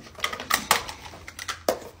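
A handful of sharp clicks and knocks from small makeup items, a compact and a brush, being grabbed and set down on a desktop.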